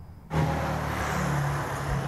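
Quiet room tone cuts off suddenly about a third of a second in to street traffic: a car engine running by with a steady rush of road noise.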